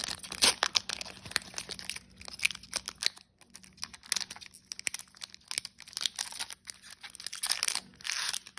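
Foil wrapper of a Pokémon TCG booster pack being torn open and crinkled by hand: a dense run of sharp crackles that thins out after about three seconds into scattered crinkles as the pack is worked open and the cards are drawn out.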